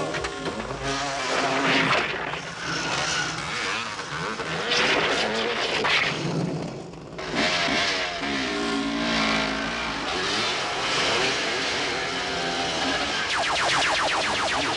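Motorcycle and car engines revving and passing, with rising and falling engine pitch over tyre and road noise. Near the end comes a rapid run of sharp cracks, like automatic rifle fire.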